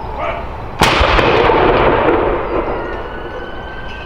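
A single shot from a 105 mm L118 light gun firing a blank salute round, about a second in: a sharp crack followed by a long echoing tail that fades over about two seconds.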